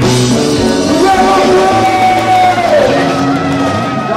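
Live konpa band music with a singer holding one long note that drops in pitch and falls away about three seconds in.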